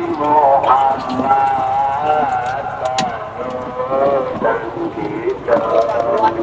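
A person's voice, drawn-out and wavering in pitch, with no clear words, over background noise; one sharp click about three seconds in.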